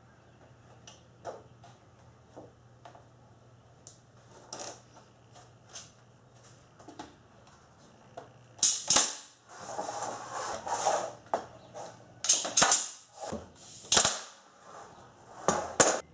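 Air-powered nail gun firing fasteners through a glued pine strip into the wall framing: a string of sharp shots in the second half, some in quick pairs. Before that, only faint taps and clicks as the strip is pressed into place.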